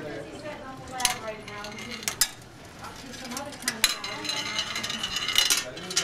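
Steel ball bearing rolling down zig-zag metal curtain-rod tracks, with several sharp metallic clicks spaced a second or so apart as it runs along and hits the track turns.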